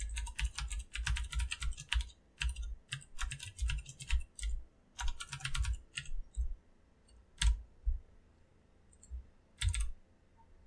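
Computer keyboard typing in quick runs of key presses for about six seconds, then a few single key taps spaced out near the end.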